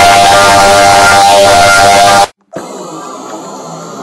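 Heavily distorted, extremely loud music or jingle audio, as produced by a video-effects render, with a few held tones under dense noise. It cuts off suddenly a little over two seconds in. After a brief gap a much quieter, different track comes in.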